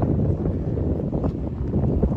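Strong wind buffeting the microphone: a loud, steady low rumble.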